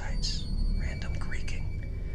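A man whispering a few short phrases close to the microphone over a steady low rumble.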